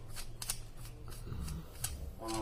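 A scatter of light, sharp clicks and taps, about six in two seconds, over a steady low hum: handling noise as microphones are put down and picked up.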